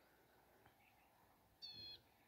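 A single short, high animal call with a steady pitch near the end, otherwise near silence.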